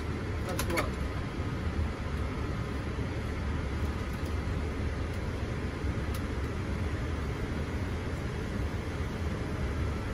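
Steady rushing flight-deck noise of a Boeing 787 in the climb: airflow and engine noise with a deep low rumble, and a couple of brief clicks less than a second in.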